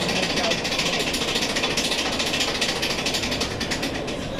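Fast, steady mechanical rattling, like a jackhammer clatter, that cuts off right at the end.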